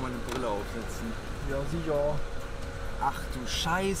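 Men talking inside a car cabin over the steady low rumble of the car running.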